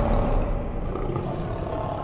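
A lion's roar sound effect from a logo sting, low-pitched and slowly fading out.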